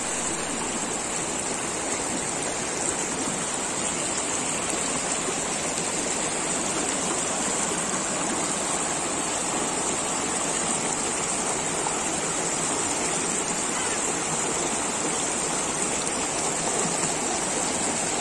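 Rocky stream rushing over and between boulders below a waterfall: a steady, even rush of white water.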